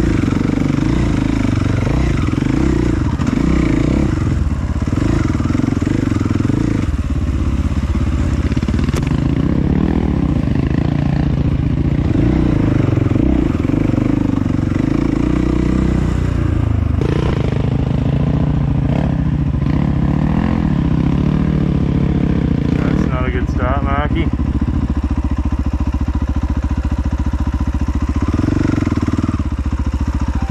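Dirt bike engine heard up close from the rider's own bike, running continuously on a trail ride and revving up and down with the throttle.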